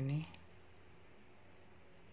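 A single computer mouse click about a third of a second in, just after a spoken word ends, then quiet room tone.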